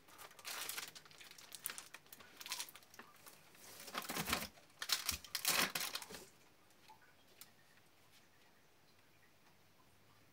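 Product packaging rustling and scraping against a cardboard box as items are packed into it, in irregular bursts that are loudest about four to six seconds in. After that it goes quiet apart from a few faint ticks.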